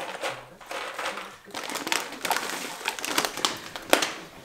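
Plastic snack-bag packaging crinkling and rustling as pretzel sticks are handled into a plastic lunch box, with irregular small clicks and one sharp click just before the end.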